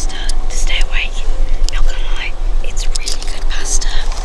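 Whispering voices over the steady low drone of a moving coach.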